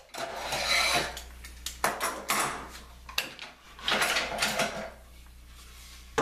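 Metal toggle clamp being worked and released, then a wooden board handled against the aluminium extrusion and table: sharp clicks and clattering knocks in three short spells.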